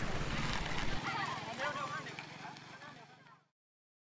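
Road ambience of a small truck's engine running with faint voices, fading out to silence about three and a half seconds in.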